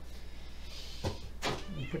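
A house cat meows briefly about one and a half seconds in, after a soft rustle and two light knocks as an empty cardboard kit box is handled.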